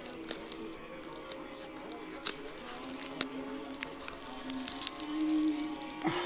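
Packaging being handled, with short bursts of crinkling and tearing and a few sharp clicks, over steady background music.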